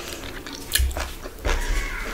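Close-miked eating sounds of a person biting and chewing curried chicken off the bone by hand: wet mouth noises with sharp smacks about 0.75 s and 1.5 s in.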